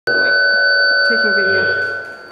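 A steady electronic tone, several pitches held together, cuts in abruptly at the start and fades towards the end.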